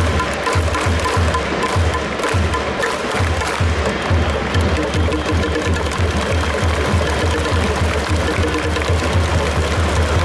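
Ballpark cheering for the batter: a steady, fast drumbeat with music over a dense crowd noise.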